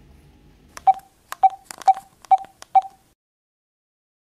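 Smartphone on-screen keypad beeping as a number is tapped in: five short beeps about half a second apart, after which the sound cuts off abruptly.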